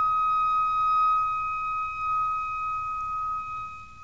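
Film-score music: a single high, steady held note, close to a pure tone, sounding alone and fading toward the end.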